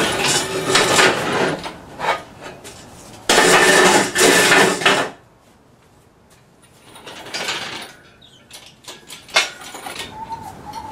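Steel engine crane clattering and rattling as it is rolled on its castors across concrete and its boom brought down over an engine: rough rattling at the start, a loud stretch of clatter about three seconds in lasting some two seconds, then a lull, a smaller rattle and a single sharp clank near the end.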